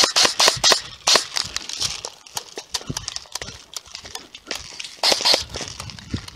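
Airsoft rifle firing a quick irregular string of shots, then another short string about five seconds in. Between the strings there are lighter scattered clicks and rustling.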